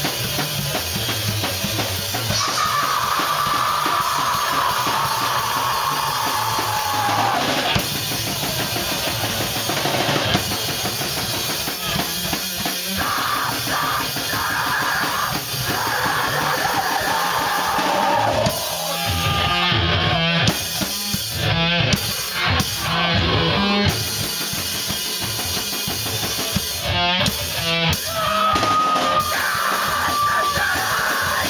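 Heavy rock band playing live and loud, with a hard-hit drum kit and electric guitar, and shouted vocals in the second half.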